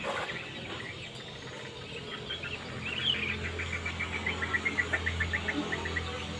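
Small birds chirping, with a rising-and-falling call about halfway and then a quick run of repeated chirps, several a second. A low steady hum comes in about halfway.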